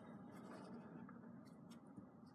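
Faint scratching of a felt-tip pen on paper as straight lines of a diagram are drawn, in a few short strokes.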